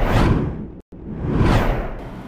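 Whoosh sound effects of a news-bulletin transition stinger: one whoosh dying away, a sudden split-second cut to silence a little under a second in, then a second whoosh swelling up.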